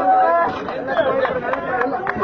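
Speech: people talking, with chatter.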